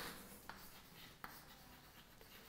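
Faint chalk writing on a blackboard: light scratching with two small taps of the chalk.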